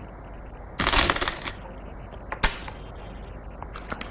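Go stones clacking: a short clatter of stones about a second in, then a single sharp click of a stone set down on the board.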